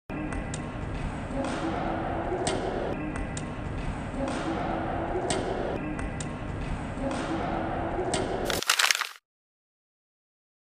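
Badminton rackets striking a feathered shuttlecock in a feeding drill: sharp cracks about once a second over reverberant hall noise. The sound ends in a brief louder burst and cuts off suddenly.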